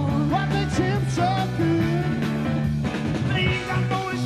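Live rock band playing loud and steady: electric guitar, bass and drums, with a male lead vocalist singing over them.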